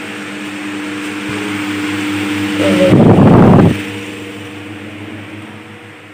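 Steady mechanical hum of a few fixed low tones, with one loud rubbing noise from handling of the phone recording it, about three seconds in and lasting under a second.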